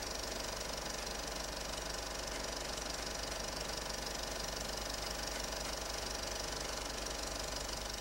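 A film projector running: a quiet, steady, fast mechanical clatter over a low hum.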